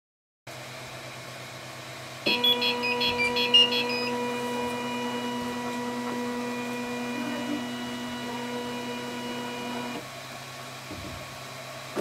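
CTC 3D printer stepper motors moving after warm-up. About two seconds in comes a second or so of short chirping tones, then a steady pitched whine as the build plate travels down, stopping about ten seconds in, all over a steady low fan hum.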